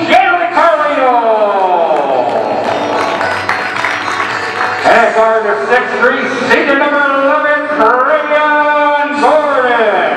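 A public-address announcer's voice booming over gym loudspeakers, drawing out a player's name in a long call that falls in pitch over the first two seconds, then more stretched-out calling.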